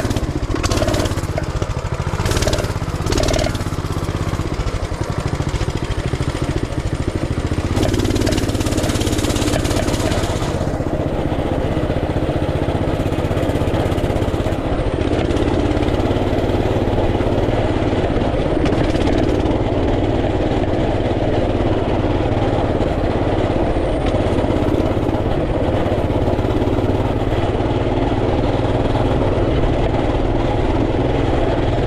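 Off-road vehicle engine running steadily while riding a wet gravel and dirt track, with a burst of rushing noise about eight seconds in that lasts a couple of seconds.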